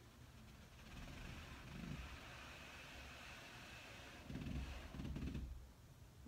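Quiet room with a steady low rumble and soft rustling as a person slides her back down a wall into a wall sit; a couple of slightly louder soft low sounds come a little past four seconds in.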